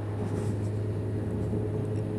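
Honda Hornet CB600FA's inline-four engine running at a steady cruise while riding, a low, even drone.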